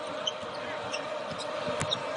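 A basketball being dribbled on the hardwood court, over the steady noise of an arena crowd.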